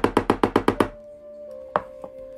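A rapid, even run of sharp knocks, about eight a second, that stops just under a second in. A faint steady tone follows, with a single click near the end.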